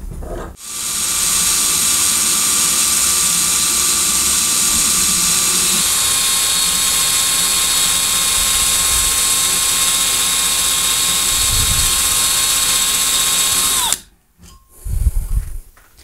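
Cordless drill running steadily, spinning a steel bolt blank against a fixed drill bit to bore it lengthwise, with a dull bit. Near the end the motor winds down and stops, and a low knock follows.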